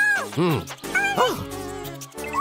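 A cartoon character's short, squeaky wordless voice sounds, three quick calls that rise and fall in pitch, over cheerful background music.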